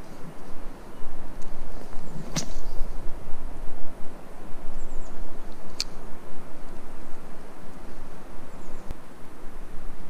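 Steady outdoor noise with an uneven low rumble, broken by one sharp snap about two and a half seconds in and a brief high chirp just before six seconds.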